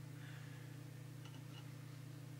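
Low steady hum with faint hiss, the quiet background of a powered-up electronics bench between spoken sentences.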